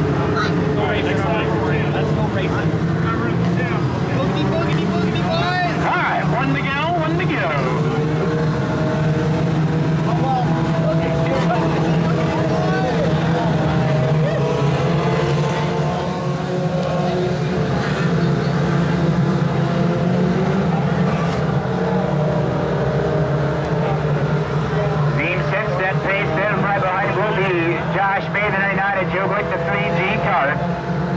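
Several Mod Lite race car engines running at low, steady revs as the field paces slowly under caution, with nearby crowd voices over it.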